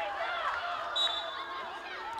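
Faint voices of players and onlookers calling out around the pitch, with a brief thin high tone about a second in.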